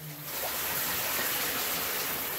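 A shower running behind a closed curtain: a steady hiss of spraying water.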